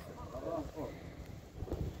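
Faint voices of footballers and coaches talking on a training pitch, under a low rumble of wind on the microphone.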